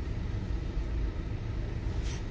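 Low, steady rumble of a car heard from inside its cabin while it creeps along in traffic.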